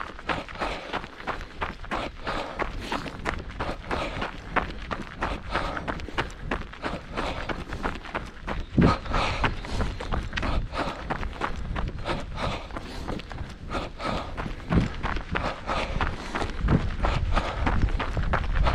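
A runner's footsteps crunching on a gravel path at a steady running pace, each stride a short scuff of shoe on loose gravel.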